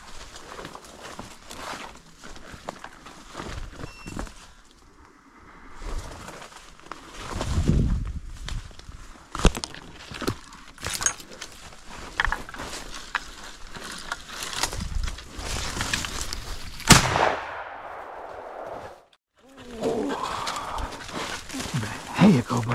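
Footsteps pushing through dry leaves and brush, then a single loud shotgun shot about 17 seconds in, with a brief echo fading after it.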